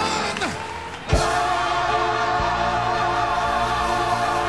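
Gospel choir singing with accompaniment in held, wavering notes. The music drops away briefly, then comes back in with a sharp attack about a second in.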